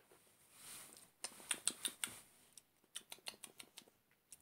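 Faint wet mouth sounds of someone tasting a drink: a soft breath, then two short runs of small lip smacks and tongue clicks as the bourbon and bitter lemon is judged on the palate.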